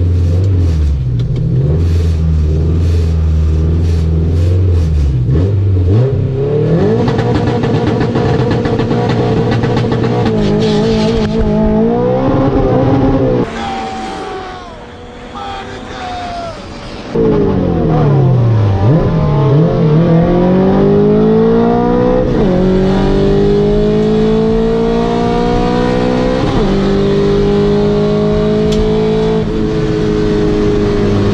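Honda CRX's swapped H22 four-cylinder engine heard from inside the cabin on a drag-strip pass. It holds steady revs at the line for about six seconds, then revs up through the gears, its pitch falling back at each upshift, several times in the second half. For a few seconds in the middle the engine is replaced by a quieter inserted clip.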